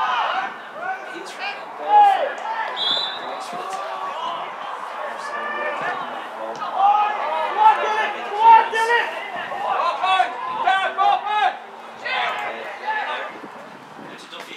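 Footballers shouting and calling to each other across the pitch during live play, with now and then a sharp knock of the ball being kicked.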